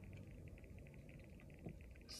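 Near silence inside a car: faint low hum with a faint, fast, high-pitched ticking, and one small click near the end.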